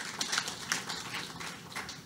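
Rapid light clicking, several clicks a second, dying away toward the end.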